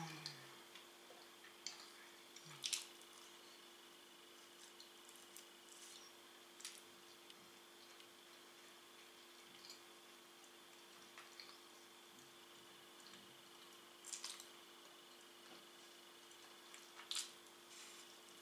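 Quiet chewing of pizza with the mouth closed: mostly near silence over a faint steady hum, broken by a few short wet mouth clicks, the loudest about three seconds in, others near the end.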